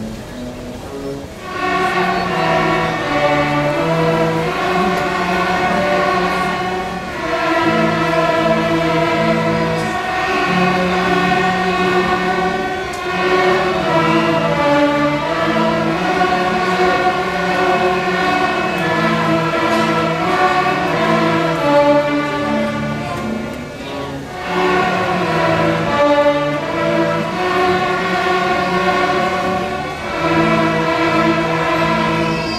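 Beginning student string orchestra playing a simple tune in long held notes. It starts about a second and a half in and breaks briefly between phrases a few times.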